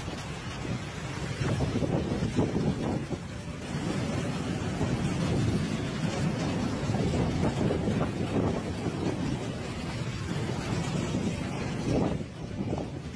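Wind buffeting a phone's microphone: a gusty low rumble and rush that rises and falls.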